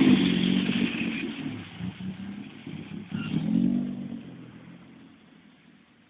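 AC Cobra replica's 2.9-litre fuel-injected V6 driving past close by and pulling away, with a short burst of throttle about three seconds in, then fading into the distance.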